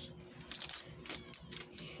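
Light crinkling and scattered clicks of a foil booster-pack wrapper and trading cards being handled.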